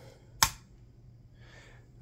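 A single sharp click about half a second in, from the handling of a red disposable lighter.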